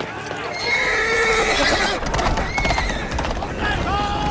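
Horses whinnying, with a clatter of hooves about a second in and a low rumble beneath from early in the clip.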